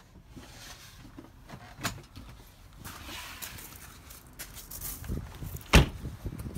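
Quiet movement and handling noise with a short click about two seconds in, then one loud thump near the end: a motorhome's habitation door being shut.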